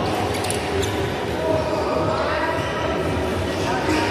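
Badminton rackets striking a shuttlecock: a few sharp clicks close together in the first second, ringing in a large hall, with people's voices later on.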